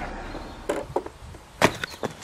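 A few irregular knocks and taps, the loudest about one and a half seconds in.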